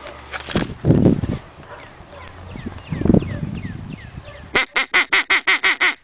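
A rapid run of about eight loud, evenly spaced quacks, about six a second, near the end. Earlier come two heavy low bursts of noise, with faint short chirps between them.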